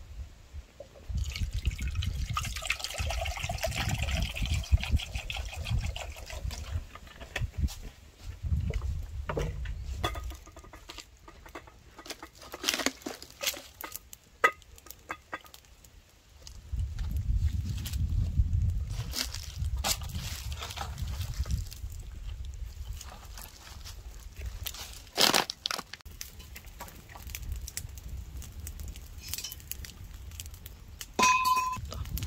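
Water poured from a plastic bottle into an aluminium pot holding eggs, starting about a second in and running a few seconds.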